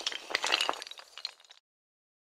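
A glass-shatter sound effect: a dense spray of small glassy clinks and tinkles that thins out and stops about one and a half seconds in.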